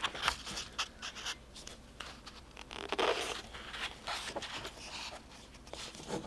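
Pages of a large hardcover book being turned by hand, the paper rustling in several short bursts, the longest and loudest about three seconds in.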